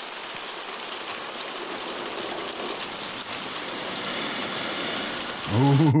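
Steady, heavy rain falling and pattering on surfaces, heard on the film's soundtrack.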